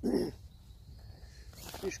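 A man's drawn-out hesitation sound, then a quiet pause over a low steady rumble, and a spoken word near the end.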